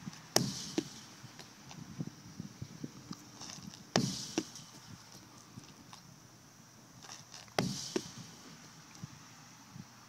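Medicine ball hitting a concrete wall three times, about every three and a half seconds; each loud, sharp smack is followed a moment later by a softer knock.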